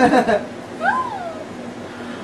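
An excited voice cries out at the start, then about a second in one short high vocal sound rises and falls in pitch.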